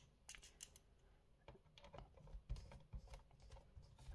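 Faint, scattered clicks and taps of a small screw and screwdriver on a laptop's plastic bottom cover as the screw is fitted and driven in. There are a few clicks in the first second and a busier run of them after about two and a half seconds.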